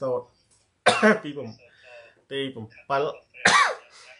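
A man coughs and clears his throat between short stretches of speech. There are two sharp bursts, the loudest about a second in and another near the end.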